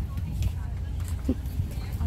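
Low, steady rumble of wind on the phone's microphone, with a faint voice briefly a little over a second in.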